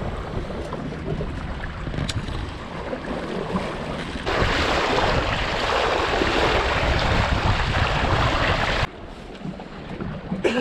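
Wind buffeting the microphone and water noise aboard a Wanderer sailing dinghy under sail. About four seconds in, a louder steady rush of the bow wave splashing against the hull takes over, and it cuts off suddenly near the end.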